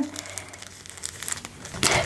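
Soft rustling and crinkling of a thin template sheet and bias tape being pressed and pulled by hand, with a few faint crackles.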